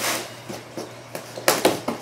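Hands handling a large cardboard box, with a quick cluster of sharp knocks on it about a second and a half in.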